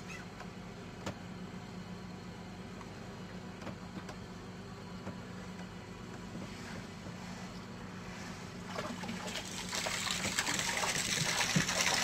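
A stream of urine splashing into lake water beside a boat, starting about nine seconds in and growing louder, over a low steady hum.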